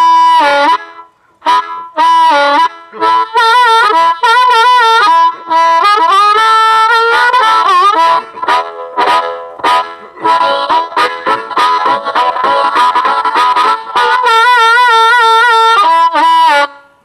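Blues harmonica cupped against a handheld microphone and played through a 1993 Fender Bassman tube amp with its volume on 4. It plays phrases of held and quick notes with short breaks, bent notes about six to eight seconds in, and a long held chord near the end.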